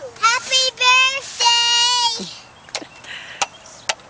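A young girl's high voice in a sing-song, rising and falling over a few syllables, then holding one long note that ends about two seconds in. A few sharp clicks follow.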